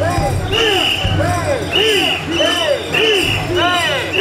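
Mikoshi bearers chanting together in a steady rhythm, about two calls a second, as they carry the portable shrine. Short high whistle-like blasts sound in time with the chant.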